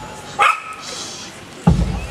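A single short, sharp yelp about half a second in, then a live rock band comes in near the end with a loud hit of drum kit and bass.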